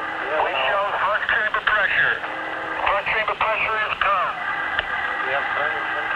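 Unclear, tinny radio voice chatter on the mission control communication loops, several voices talking over each other through a narrow, telephone-like band. A faint steady tone sits under the voices, joined by a higher steady tone from about two-thirds of the way in.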